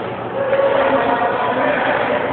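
Steady background din of a busy indoor badminton hall, with faint distant voices.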